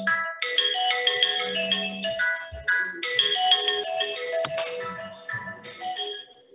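Phone ringtone playing a quick, repeating marimba-like melody of short bright notes, growing fainter near the end.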